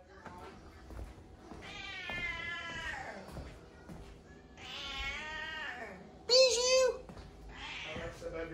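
A house cat meowing three times: two long, drawn-out, wavering meows, then a shorter, sharper and louder one near the end.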